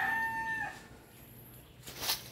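A rooster crowing: the long held end of the crow, which stops less than a second in.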